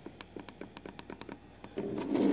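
Light, irregular clicks and taps, about six a second, from fingers handling the opened iPod touch's casing and frame. A louder, lower sound comes in near the end.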